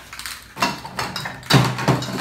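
Aerosol spray paint cans being handled, with a few short knocks and clinks of metal cans, the loudest about one and a half seconds in.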